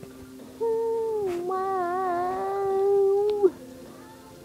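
A young woman's voice holding one long wordless note, dipping slightly in pitch, wavering with vibrato in the middle, and falling off about three and a half seconds in. A faint steady tone sits underneath.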